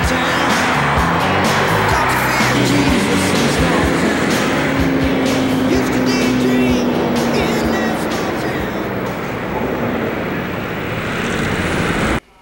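Loud soundtrack music mixed with a car engine running and driving past, with one steady tone held for several seconds in the middle. It cuts off suddenly at the end.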